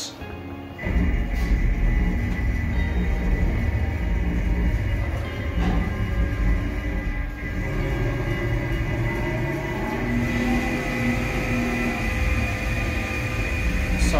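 CNC milling machine's table traversing along the X axis: a steady machine rumble with a high whine, which starts suddenly about a second in and runs on loud.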